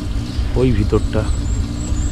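A vehicle engine idles steadily with a low rumble while people speak softly over it. A thin, high whistle sounds faintly in the second half.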